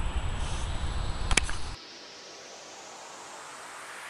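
Low rumbling noise on the microphone with one sharp click about a second and a half in, then a sudden cut to a faint hiss that slowly swells.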